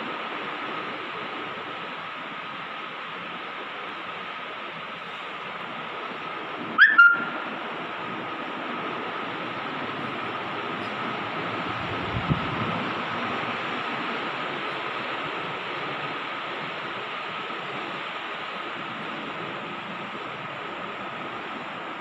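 Steady background hiss with a faint constant whine. About seven seconds in there is a brief, sharp squeak, and a little before halfway through a soft low thump.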